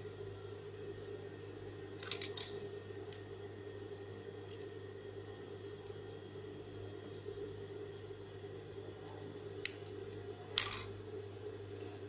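A few short, sharp snips and clicks of scissors trimming the fabric of a neckline facing, a couple near the start and two more near the end, over a steady low hum.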